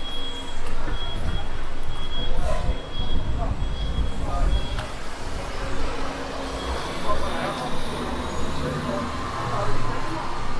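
Busy city street: a vehicle engine rumbles low throughout while a high electronic beep repeats a little faster than once a second, stopping about five seconds in. Passers-by talk in the background.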